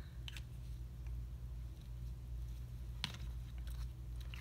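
Plastic Prismacolor markers knocking together as they are gathered up and put away: a few light clicks, the sharpest about three seconds in, over a steady low hum.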